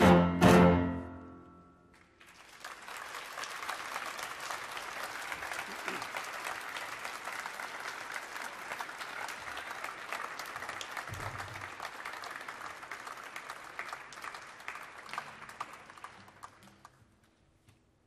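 The closing chord of a cello and piano duo rings out and fades. About two seconds in, audience applause starts, holds steady, and dies away near the end.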